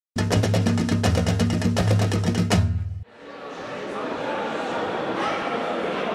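Intro music sting of rapid, evenly spaced drum hits over a bass line, cutting off suddenly about halfway through. Then the murmur of voices in a large hall fades in.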